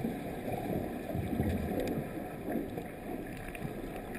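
Muffled churning and rushing of water heard through an underwater camera at the bottom of a pool, as finned swimmers kick and scramble nearby. There is a heavier low surge about a second in and a few faint clicks later on.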